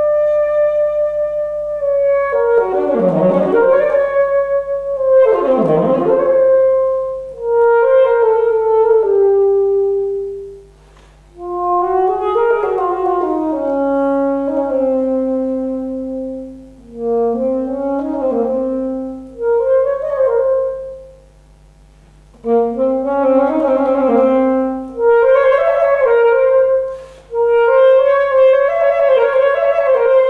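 An unaccompanied alto saxophone plays a slow melodic line in separate phrases, with short silences between them.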